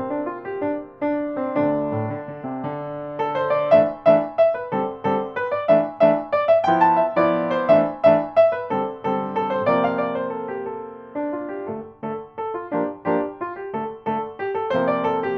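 Solo piano playing a brisk, swashbuckling hornpipe in 6/8, with accented detached chords under a jazzy melody. It eases to a softer phrase ending just before the end, then starts back up strongly.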